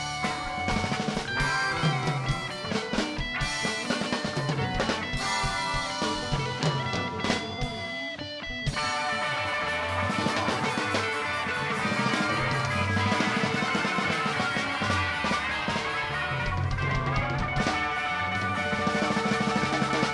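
Live rock band playing, with drum kit and guitar. About eight seconds in the sound thins out briefly, then the full band comes back in.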